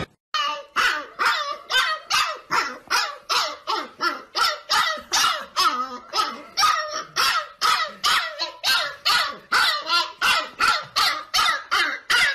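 Husky barking over and over in short, evenly spaced barks, about two or three a second.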